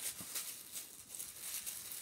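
Rustling and crinkling of a small package being handled, a quick run of light, irregular crackles.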